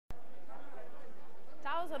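Faint voices in the background of a room, then a woman starts speaking in Italian near the end.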